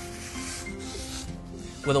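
A wet paper towel rubbed back and forth over a wooden panel, wiping off squeezed-out latex caulk. It makes a soft, continuous scrubbing hiss, with quiet background music underneath.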